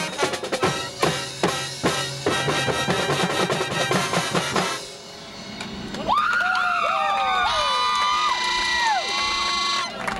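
Marching band playing stand music: drumline and brass in a fast, drum-driven passage that stops about halfway through. After a short pause, brass players hold long notes with sliding scoops and falls.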